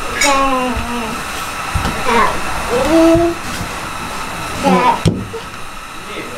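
A young child's high voice making a few short utterances, ending with the word "red", over a steady whirring hum. There are a few soft knocks as wire spools are handled and set down on a plywood floor.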